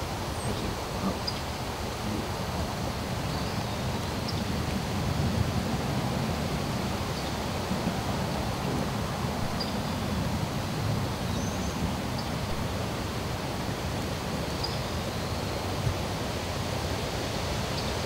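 Steady outdoor background noise with a low rumble, with a few faint, short high chirps scattered through it.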